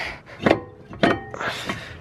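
Two sharp metal knocks at the front brake caliper, about half a second apart; the second leaves a brief metallic ring.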